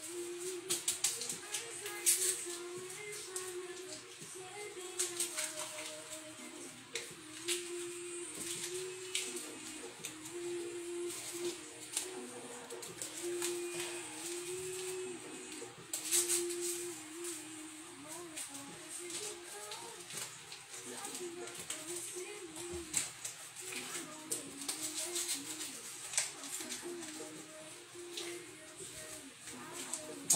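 A woman humming a tune softly in held, stepping notes while shaking seasoning from a plastic shaker bottle over chicken, the grains rattling in short shakes every few seconds.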